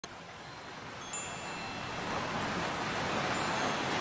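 Wind chimes ringing, several high tones coming in together about a second in, over a steady rush of noise that swells toward the end.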